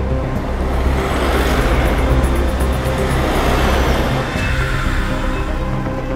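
Background music, with a road vehicle driving past: its noise swells from about a second in and fades away around four and a half seconds.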